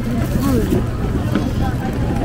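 Voices talking, unclear and not picked up as words, over a steady low outdoor rumble.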